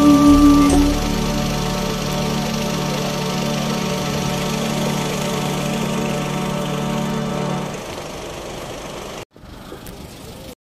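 Closing notes of a slow song: a last high note ends just under a second in, then a steady chord is held, drops in level about eight seconds in and cuts off abruptly shortly after.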